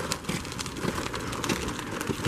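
Footsteps on a slushy, snowy sidewalk, a few irregular soft crunches over a steady outdoor street hiss.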